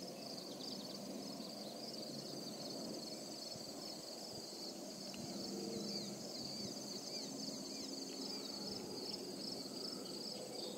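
A steady, high-pitched chorus of crickets and other insects chirping over a soft low background noise.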